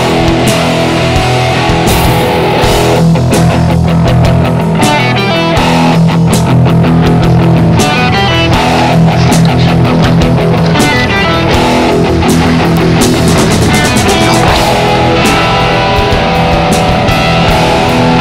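Punk rock band playing electric guitars over a drum kit, in a passage with no singing.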